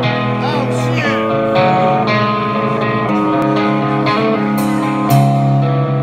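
Rock band playing live through a club PA: electric guitar chords ringing over bass, changing every second or so, with two sharp cymbal hits near the end.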